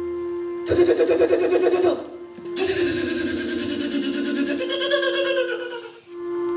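Stage sound from a theatre performance: a steady sustained musical drone runs throughout. Over it come rapid, rattling outbursts with voices in them, a short one about a second in and a longer one from about two and a half seconds until just before the end.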